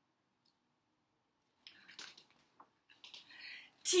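Silence, then from about halfway in, faint rustling and a few small clicks as a picture book's page is turned. A woman's reading voice starts right at the end.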